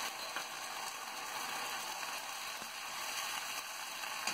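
Onion, capsicum and green chilli sizzling in hot oil in a kadhai, a cornflour and red chilli paste just poured over them: a steady frying hiss.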